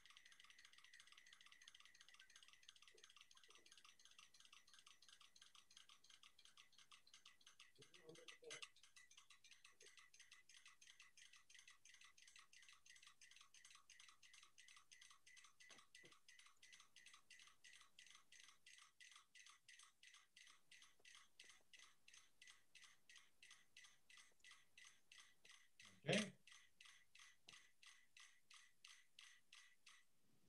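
Five mechanical metronomes ticking faintly on a shared board that rests on rolling cans, heard through a video played over a video call. Their ticks start out of step and fall into one even beat as the coupled metronomes synchronise in phase. A brief louder noise comes near the end.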